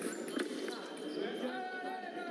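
Fencers' shoes stepping and stamping on the piste in a foil bout, a couple of short impacts in the first half second, with voices in the hall behind.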